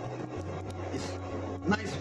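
Steady low hum of commercial kitchen equipment, with a faint background haze and a brief voice-like sound near the end.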